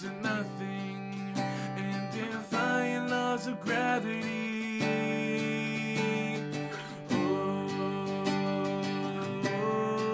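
Acoustic guitar strummed in steady chords, with a man singing over it.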